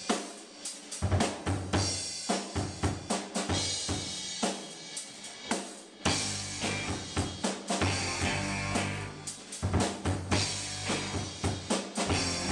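Live rock band playing with a drum kit driving a steady beat of kick, snare and cymbals over electric guitars. About halfway through, the low end fills out as the electric bass and full band come in.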